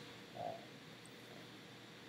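Quiet room tone with a faint steady hiss, broken about half a second in by one short, soft hesitant "uh" from a man's voice.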